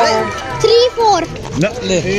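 Several voices, children's among them, talking and calling over one another, with music playing underneath.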